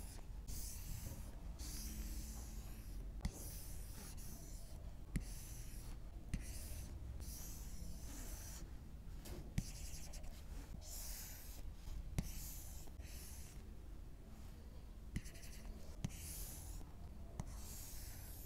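Stylus drawing brush strokes on an iPad's glass screen: a series of short scratchy hisses, each about half a second to a second long, with a few sharp taps as the tip meets the glass.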